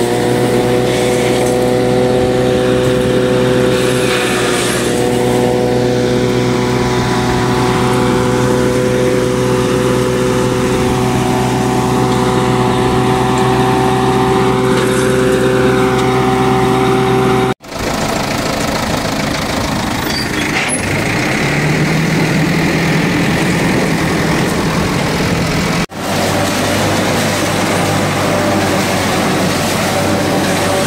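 Tractor engine running steadily under load, driving a Fimaks forage harvester that chops maize stalks and blows them into a trailer: a loud, continuous machine drone with strong steady tones. The sound breaks off abruptly and changes twice, a little past halfway and near the end.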